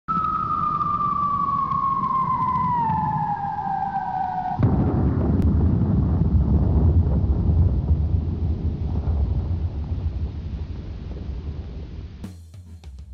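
Title-card sound effect: a single tone glides steadily downward over a low rumble, then about four and a half seconds in a sudden deep boom breaks in and rumbles, slowly fading.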